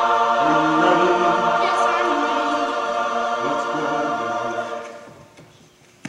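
Opera singers' voices sounding together, holding a long chord while lower voices move beneath it, then fading away about five seconds in. A single sharp click comes at the very end.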